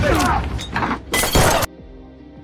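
Film fight sound effects over background music: scuffling noise, then a little past halfway a loud, sharp crash lasting about half a second that cuts off abruptly, leaving only the music.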